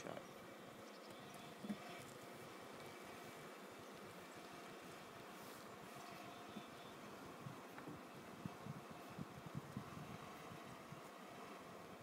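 Near silence: a faint steady background hiss, with a few soft, short knocks in the second half.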